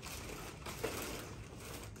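Faint rustling and handling of cardboard and packaging as a laptop is lifted out of its box, with a soft click a little under a second in.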